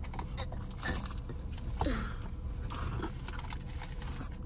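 Close-up chewing and mouth sounds of someone eating fast food, wet smacks and small clicks, with one short falling hum about two seconds in.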